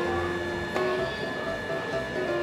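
Electronic arcade machine music: held tones that step up in pitch about three-quarters of a second in, over a low hum.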